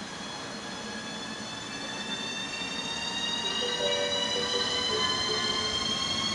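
ČD class 380 (Škoda 109E) electric locomotive pulling away with a passenger train. Its traction equipment gives a chord of high whines that climb steadily in pitch as it gathers speed, growing louder as it comes closer.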